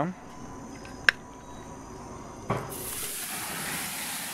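A sharp click about a second in, then a thud as the marinated leg of lamb lands fat side down on a very hot gas-grill grate, followed by a steady sizzling hiss as the fat and marinade hit the heat and flare up.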